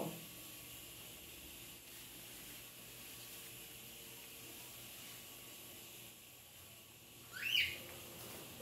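Quiet background hiss, with a single short bird chirp rising in pitch near the end.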